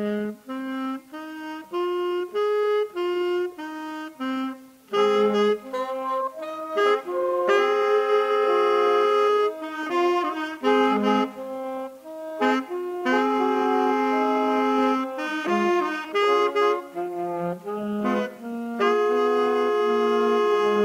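Saxophone quartet playing a blues in harmony: short, separate notes in the first several seconds, then longer held chords, phrases broken by brief pauses.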